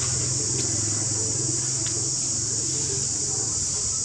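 Insects droning steadily at a high pitch, with a low engine hum underneath that fades out about three seconds in.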